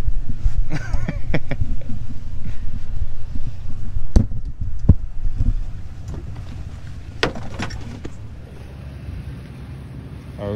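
A steady low rumble on the in-car microphone, with sharp clicks and knocks from the seat-belt harness being handled and adjusted. The rumble drops away in the second half.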